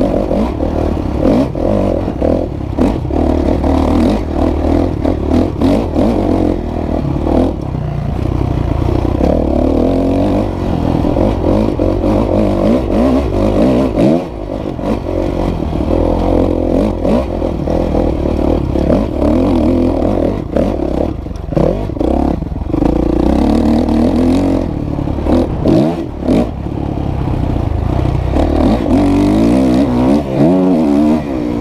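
2016 Kawasaki KX450F dirt bike's single-cylinder four-stroke engine under way, its pitch rising and falling over and over as the throttle opens and closes and the gears change. Short knocks and rattles from the bike running over the rough track are mixed in.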